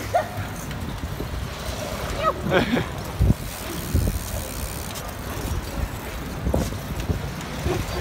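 Steady low rumble of wind and road noise from riding bicycles along a city street, picked up by a camera moving with the riders. A few low thumps come through, about three and six and a half seconds in.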